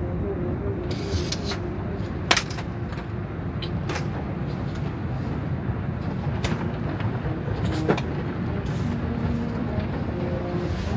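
Automatic car wash heard from inside the car: a steady rumble of water spray and cloth brush strips washing over the glass and body. Sharp knocks and slaps come through it as the brushes strike the car, the loudest about two seconds in.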